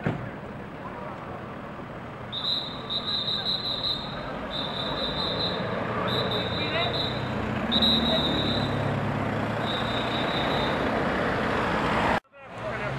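Street traffic noise with vehicles passing on the road. From about two seconds in until near the end, a high thin whine comes and goes in stretches of about a second each.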